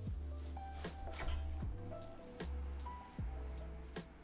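Background music with a steady bass line. A chef's knife cuts through raw pork shoulder and knocks several times on a wooden cutting board.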